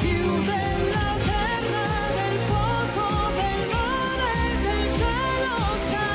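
Italian pop song performed live: a woman singing into a microphone over full band accompaniment.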